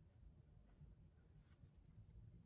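Near silence: faint room tone with a couple of very faint ticks.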